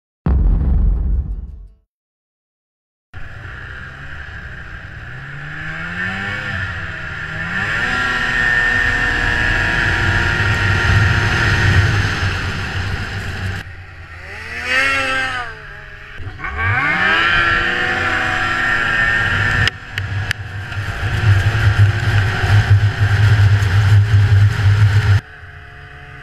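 Snowmobile engine running at trail speed, its pitch climbing and falling as the throttle is worked. The sound breaks off abruptly several times where clips are joined, with a short silent gap near the start.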